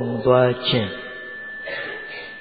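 A monk's voice giving a sermon into a microphone: a few words in the first second, then a pause with faint room hiss and a thin, steady high-pitched tone.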